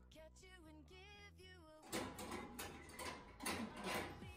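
Quiet background music with singing, then about two seconds in, a run of metal clicks and rattles as the lock and latch of a steel locker are worked and tugged.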